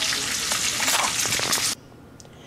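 Bacon frying in a skillet on a gas stove: a steady sizzle with small pops, which cuts off suddenly near the end.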